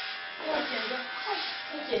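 Electric hair clippers running with a steady buzz as they shave a head down to stubble.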